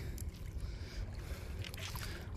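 Faint, steady outdoor background by a river: a low rumble with a soft hiss above it.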